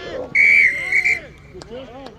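A whistle blown in one short, shrill blast of just under a second, starting about a third of a second in and wavering slightly near its end. A sharp click follows about a second and a half in.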